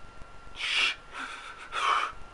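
A man's gasping breaths while weeping: three sharp, noisy breaths, a loud one about half a second in, a softer one, and another loud one near the end.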